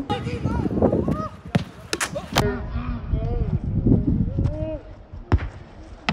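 Footballs being kicked during a training match, heard as several sharp thuds of boot on ball, with voices calling out across the pitch and wind rumbling on a phone microphone.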